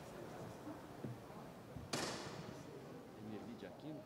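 A single sharp knock about two seconds in, with a short echo, over faint murmur of voices in a large hall; a smaller click comes about a second in.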